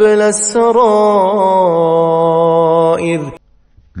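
A man's voice chanting a Quran verse in Arabic in melodic recitation style: a single long phrase with small melodic turns that settles into a held note, stopping about three seconds in.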